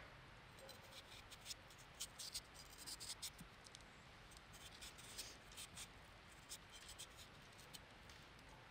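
A chef's knife peeling a raw potato by hand: faint, irregular little scraping ticks as the blade cuts under the skin, coming in short uneven runs.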